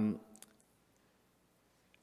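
A man's drawn-out "um" trails off, then a pause of near silence broken by a faint click about half a second in and another just before the end.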